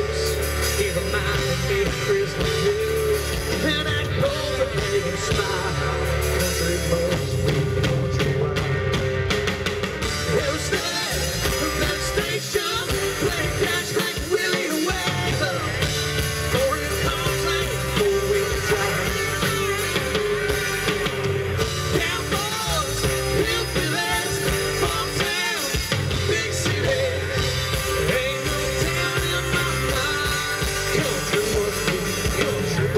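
Live rock band playing a song through a stage PA: electric and acoustic guitars, bass, drum kit and keyboard, with singing.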